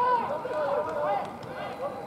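Indistinct, raised voices of rugby players shouting and calling across the pitch.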